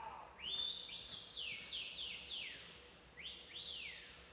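A spectator whistling: a string of sharp, high whistles, each sliding down in pitch, coming in a quick run and then two more after a short pause.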